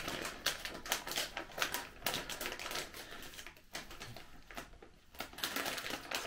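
Plastic sweet packet of Maltesers being handled and opened: a quick, irregular run of crinkles and clicks that thins out after the first few seconds.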